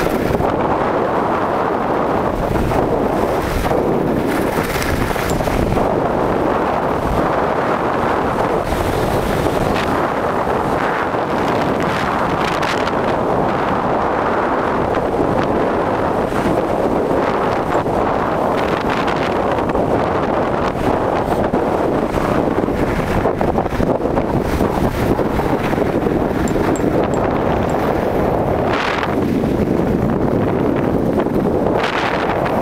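Wind rushing over the camera microphone of a skier going downhill at speed: a loud, steady roar. Every few seconds it swells with a brighter hiss, the scrape of skis on snow through the turns.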